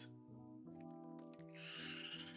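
Quiet background music holding sustained notes. About a second and a half in comes a short soft swish as a trading card is slid off the mat and flipped over.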